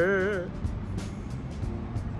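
Faint background music over a steady low rumble of outdoor background noise, after a man's voice trails off about half a second in.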